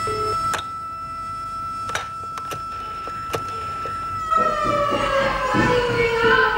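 Prison alarm siren sounding a steady single tone with a few sharp clicks over it. About four seconds in, its pitch begins to fall slowly.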